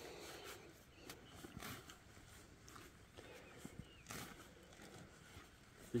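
Faint crunching and scraping as a metal detectorist's digging spade cuts into grassy turf and soil, in a few short separate strokes.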